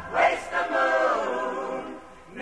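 A stage musical's ensemble singing together with little or no band under them, in two phrases, the second fading near the end.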